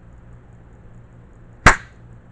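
A single short, sharp blast of compressed air from an air line at the air outlet port of a Rattm 1.8 kW ISO20 ATC spindle, about one and a half seconds in, with a brief hiss trailing off.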